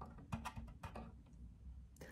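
A few faint, short clicks and light taps from a solid wood tray being handled and turned in the hands, over a quiet room hum.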